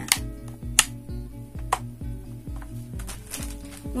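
Background music with a steady beat, over which three sharp clicks come in the first two seconds: the red plastic rocker on/off switch of a five-socket power strip being flicked.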